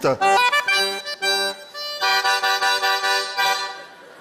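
A small button accordion playing a short flourish: a few quick staccato chords, then one held chord that fades out.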